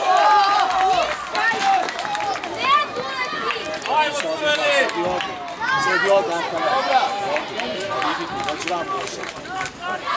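Many high-pitched voices overlapping, children and adults shouting and calling out during youth football play.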